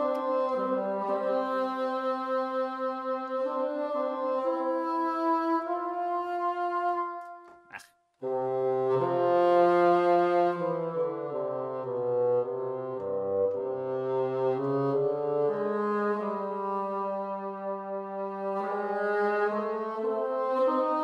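A sampled bassoon (ProjectSAM Lumina legato bassoon patch) played on a keyboard: a slow line of sustained notes joined legato, stepping from pitch to pitch. The line stops briefly about seven and a half seconds in, then carries on in a lower register. The player still hears occasional odd glitches in this patch's legato transitions.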